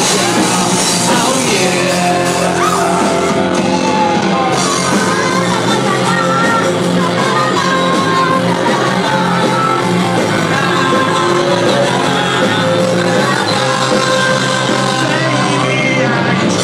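Live rock band playing at full volume, with electric guitar under a lead vocal that is sung and shouted.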